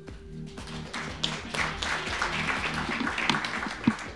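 Audience applauding over steady background music, the clapping swelling about a second in and thinning out near the end. A single sharp thump just before the end.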